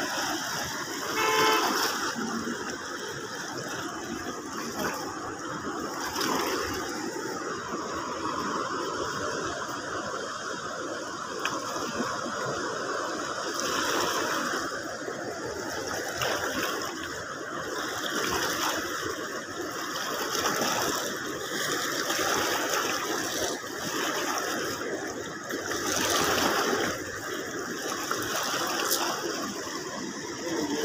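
Fast-flowing canal water rushing along the bank, a steady noise that swells and eases every few seconds.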